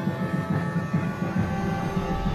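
Sicilian bagpipe (zampogna) playing a melody of held notes over its steady reedy drone, with a low rumbling underneath.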